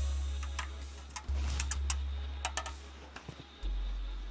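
Background music carried by deep bass notes, each fading away, with a new one about every second and a half. Light clicks and taps sound over it.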